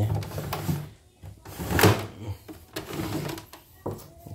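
Irregular knocks, clatter and rubbing from handling, with the sharpest knock about two seconds in.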